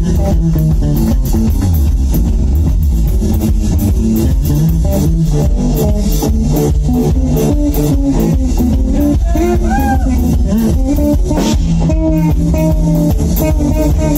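Live blues band playing electric guitar with bent lead notes over a drum kit's steady beat and a low bass line.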